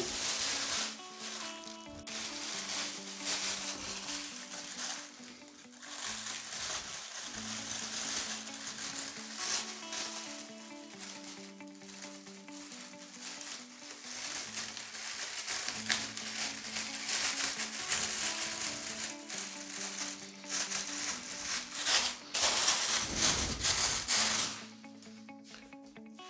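Clear plastic roasting bag crinkling and rustling as hands gather its open end and clip it shut, over quiet background music with a simple melody. The crinkling dies away near the end, leaving only the music.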